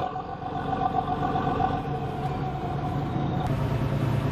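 A fishing boat's engine running steadily: a low hum with a higher steady tone over it that drops out about three and a half seconds in.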